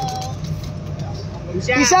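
Steady low rumble of an idling engine under faint voices, with a man shouting just before the end.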